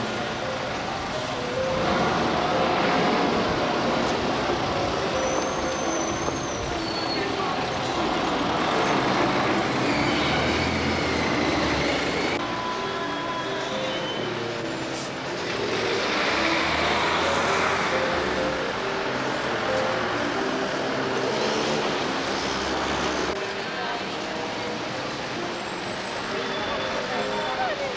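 Outdoor street ambience: motor traffic passing, the level swelling and easing as vehicles go by, with indistinct voices mixed in.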